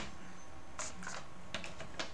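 Computer keyboard being typed on: a few scattered, faint keystrokes.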